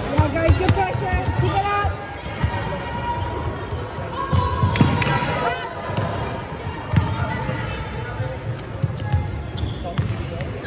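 Irregular thuds of players' feet on a wooden sports-hall floor, echoing in the hall, with players' voices calling out over them.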